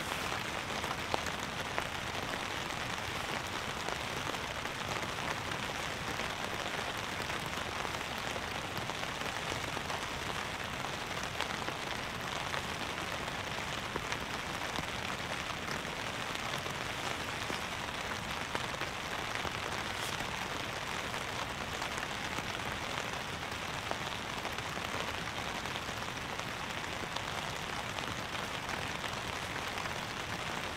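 Steady rain falling on a tarp tent, an even patter with an occasional louder drop.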